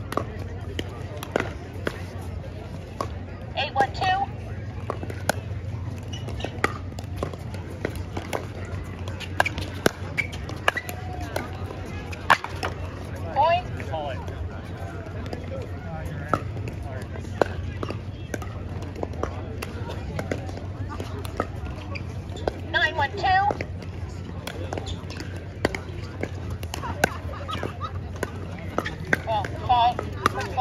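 Pickleball paddles striking a plastic ball: sharp, irregular pocks throughout. Brief snatches of voices come a few times.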